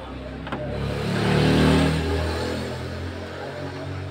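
A motor vehicle's engine going past, swelling to its loudest about a second and a half in and then slowly fading.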